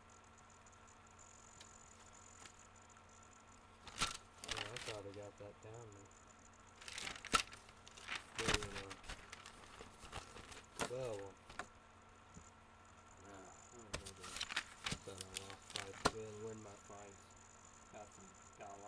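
Indistinct voice in several short bursts, mixed with crinkling and sharp clicking handling noises, over quiet room tone.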